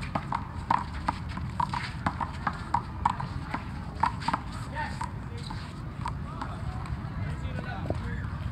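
Quick sharp taps and slaps from a one-wall handball rally, several a second: sneakers striking and scuffing the asphalt court and the small rubber ball hitting hands and the wall. They stop about four and a half seconds in, and voices are heard over a steady low outdoor rumble.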